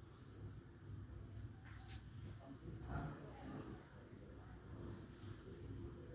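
Quiet room noise with a steady low rumble, and faint, indistinct voices in the distance around the middle. There are a couple of soft clicks, one near two seconds in and one near five.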